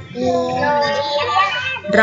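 Young children and a woman teacher chanting Thai word spelling aloud together in a drawn-out, sing-song recitation, sounding out the syllables of a word. The voices overlap and come through a video call.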